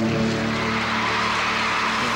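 Audience applause breaking out suddenly as a song ends, with the band's last chord still ringing underneath.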